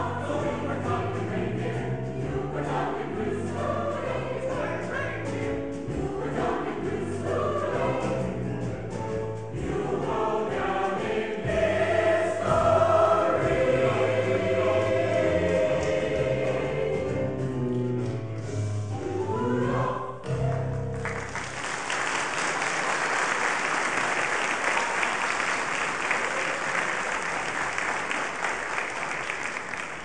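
Mixed-voice choir singing, the song ending on a held chord about two-thirds of the way through. Then the audience applauds steadily, the applause fading near the end.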